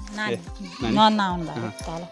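Goats bleating, twice, over background music.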